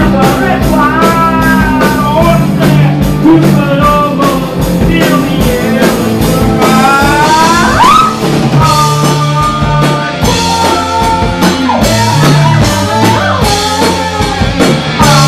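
A live rock band playing: electric guitar and a Pearl drum kit, with a woman singing over them. About seven seconds in, a long rising glide climbs to a peak near the eight-second mark.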